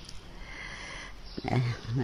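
A man's speaking voice pausing between phrases with a soft in-breath, then starting to speak again about a second and a half in.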